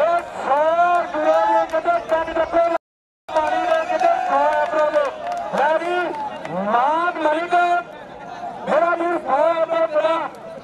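A man's voice commentating in long, drawn-out pitched phrases, close to chanting. The sound cuts out completely for about half a second around three seconds in.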